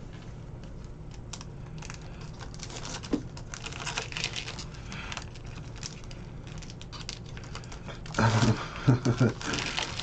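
Silvery trading-card pack wrappers crinkling and tearing as a pack is opened by hand: a run of small, quick crackles. A short laugh near the end.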